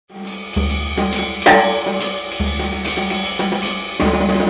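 Drum kit played with sticks: a groove of hi-hat strokes over bass drum hits, with cracking snare hits. The hardest stroke comes about one and a half seconds in.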